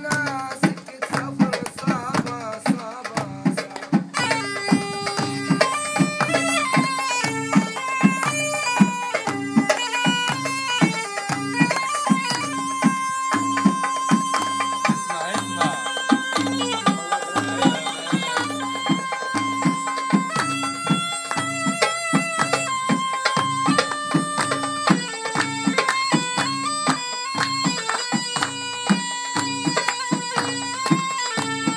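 Bedouin folk music: a reed wind instrument with a bagpipe-like drone plays a wandering melody over a steady beat of drum strokes.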